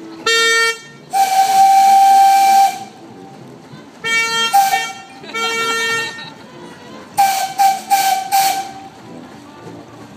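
Steam whistle of a steam narrowboat, sounding over a hiss of steam: one long blast of about a second and a half, a short toot, then four quick toots near the end. Between the whistle blasts a second, lower and reedier horn sounds several short blasts.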